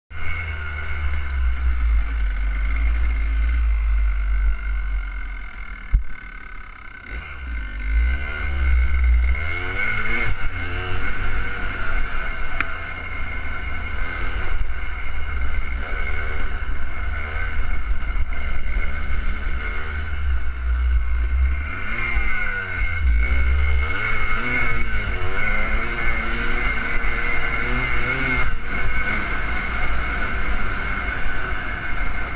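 Kawasaki KDX200 single-cylinder two-stroke dirt bike engine under way, revving up and down again and again as it pulls through the gears, over a heavy low rumble. It eases off briefly about six seconds in, then climbs back up.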